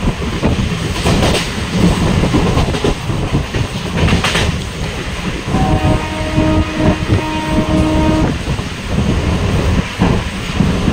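Passenger train running, heard from an open coach doorway: a steady rumble of wheels on track with a few sharp rail-joint knocks. A locomotive horn sounds for about three seconds, starting past the middle.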